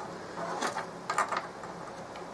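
Faint handling sounds as a small circuit board is fitted into a plastic charger case: a few light knocks and scrapes in the first second and a half.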